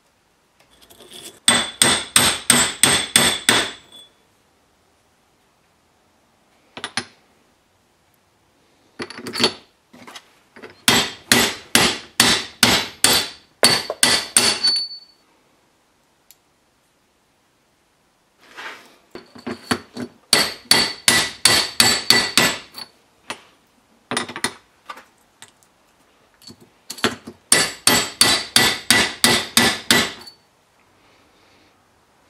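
Hammer tapping a steel bearing punch in rapid runs of about four to five strikes a second, each strike ringing metallically, with pauses between the runs. The punch is driving a needle roller bearing into the bore of a planetary gear clamped in a vise.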